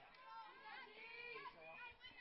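Faint distant voices at a softball field: scattered chatter and calls, very low in level, with no commentary over them.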